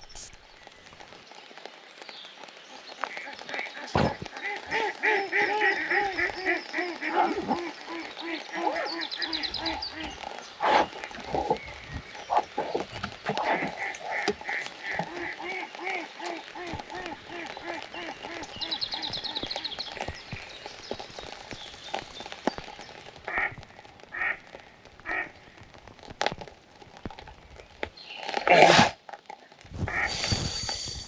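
Ducks quacking in long runs of rapid calls, over a faint patter of rain on the pond, with a few sharp knocks, the loudest near the end.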